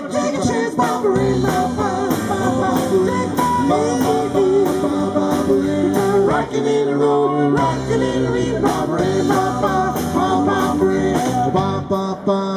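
Live rock'n'roll band playing: electric guitars, electric bass and a drum kit, with a steady beat of drum and cymbal strikes throughout.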